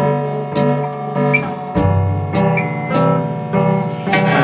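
Rock band playing live: electric guitars holding sustained chords over a bass line, with drum and cymbal hits about every 0.6 s and a chord change near the middle.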